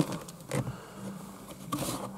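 Quiet car-interior handling sounds: a soft knock about half a second in, then a brief scraping rustle near the end as the sun visor is pulled down and its vanity-mirror cover slid open.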